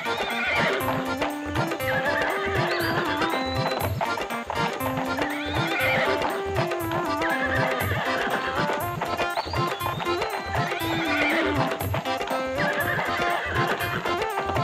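Background music with horse hoofbeats clip-clopping and a horse neighing, the pattern repeating every few seconds like a looped cartoon sound effect.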